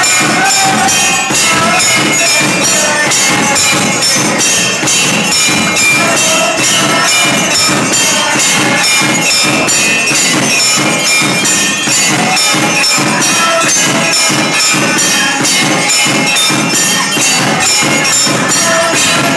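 Devotional music: singing over a steady, fast beat of jingling percussion and bells.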